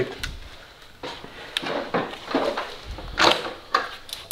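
Handling noises from a silicone intake hose coupler being worked by hand: scattered rustles and a few light knocks.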